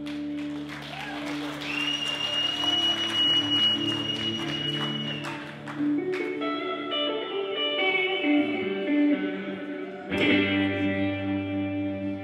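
Solo electric guitar playing slow, sustained, ringing chords, moving to new chords about six seconds in and again about ten seconds in. Audience applause sounds under the first half.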